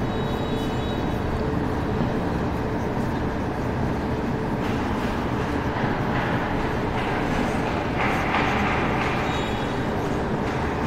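Steady low rumble and hiss of background noise, with a marker scraping and squeaking on a whiteboard in short strokes, busier in the second half.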